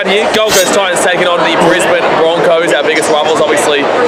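A man talking close to the microphone.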